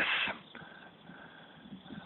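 Low background noise in a pause between a man's sentences, with the end of a spoken word fading out at the very start.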